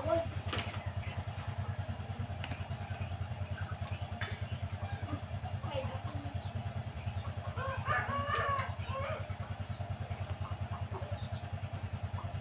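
A small engine idling with a steady, fast low throb throughout. A rooster crows about eight seconds in, and there are a few light clinks near the start and about four seconds in.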